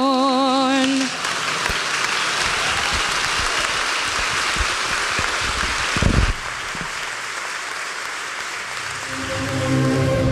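A singer's held final note with vibrato ends about a second in, and the congregation breaks into sustained applause, with a dull thump about six seconds in. Instrumental music comes in near the end.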